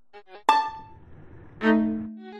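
Improvised electronic-instrument music: a few short pitched blips, then two louder notes about a second apart, each starting sharply and dying away, with a low rumbling noise between them.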